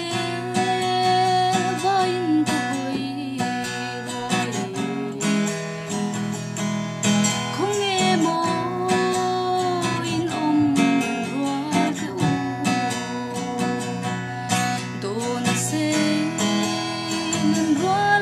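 A song: strummed acoustic guitar accompanying a sung melody that runs throughout.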